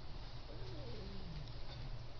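Steady low hum and hiss of a room recording, with one faint call that glides down in pitch for about a second near the middle.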